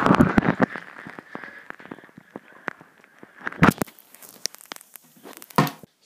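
Crackling and clicking picked up by an iPad's microphone just after it fell into bath water, with handling knocks as it is retrieved. A loud wash of noise dies away in the first half second, and two louder knocks come around the middle and near the end.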